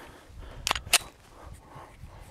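Two sharp mechanical clicks about a third of a second apart, from handling the just-emptied Glock 19 Gen 3 pistol.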